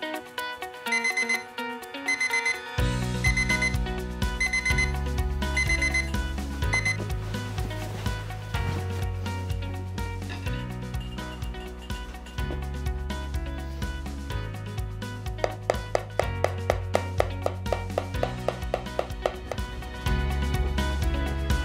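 Digital alarm clock beeping in quick bursts about once a second, stopping about seven seconds in, over background music whose bass line comes in about three seconds in.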